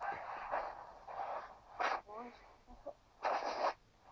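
Faint, indistinct voice from a video call coming through a phone's loudspeaker, in short breathy snatches with a brief burst near the end.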